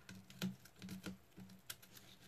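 A few light clicks and taps of tweezers and thin card as a small die-cut paper piece is handled and pressed into place, over a faint low hum.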